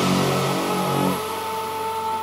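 Melodic techno breakdown with no beat: sustained synthesizer tones, joined about a second in by a steady high synth note.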